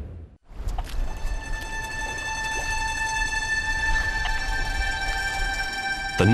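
Background music: a single high synth note held steady over a low rumble. It comes in after a brief drop-out about half a second in.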